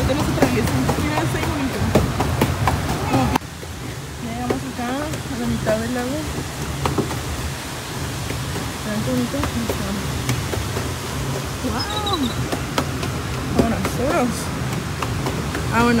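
Faint, intermittent talking over a steady low noise from the lake and the wind. The sound drops abruptly about three seconds in.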